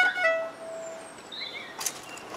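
A violin playing a couple of short notes, the last one held and fading out about a second in. A faint bird chirp follows, and a short click comes near the end.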